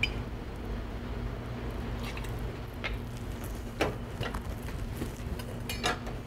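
Tequila poured into a steel jigger and tipped into a metal cocktail shaker tin, with four light clinks of metal and glass spread through it, over a steady low hum.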